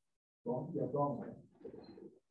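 A voice speaking briefly, its words not made out. It starts about half a second in and trails off near the end.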